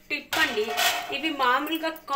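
Stainless-steel colander clattering and scraping against a steel plate as boiled sweet corn kernels are tipped out onto it.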